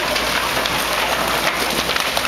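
Wooden framing and debris of a house crackling, splintering and clattering as an excavator pulls it down: a dense, continuous patter of small breaks and falling pieces.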